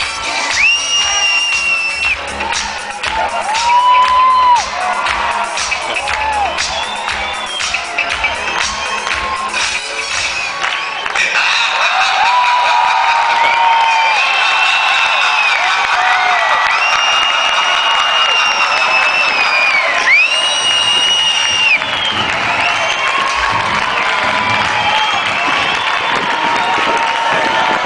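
Live band music with a heavy beat, mixed with a cheering crowd. About eleven seconds in the music drops out and loud crowd cheering takes over, with long high-pitched cries held over it.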